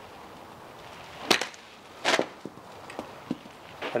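Two sharp clacks about a second apart, the second a little longer and noisier, followed by a few faint ticks.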